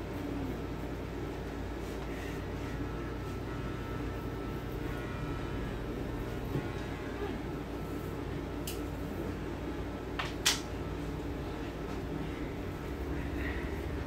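Electric hair clippers running with a steady buzz as they cut a small boy's short hair, with a sharp click about ten seconds in.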